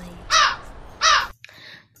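A crow cawing twice, the calls about three-quarters of a second apart, over a low hum that stops after about a second.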